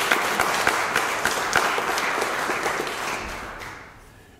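Audience applauding, many hands clapping. The applause dies away over the last second.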